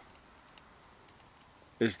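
Near silence with a few faint, scattered clicks, followed by a man's voice starting a word near the end.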